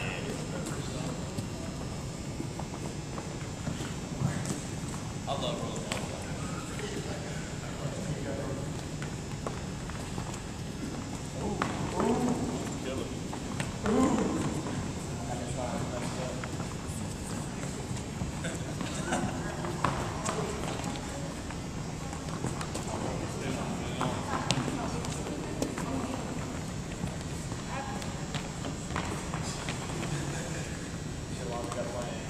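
Indistinct voices of people talking across a gym, with scattered knocks and thuds from rubber balls rolled and caught on a hardwood floor.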